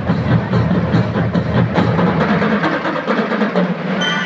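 Student marching band playing, with a front line of melodicas over mallet percussion and drums, in a dense, rhythmic texture. The low notes drop away about three seconds in.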